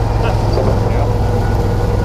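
Engine of a small utility vehicle running steadily as it drives along a woodland trail, with an even low hum.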